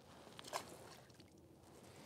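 Near silence, with one faint, brief sound about half a second in.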